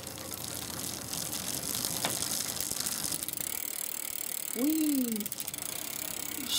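Electric bike drivetrain turning while the bike is held off the ground: the chain runs through the rear derailleur and the freewheel ticks rapidly, with one sharp click about two seconds in.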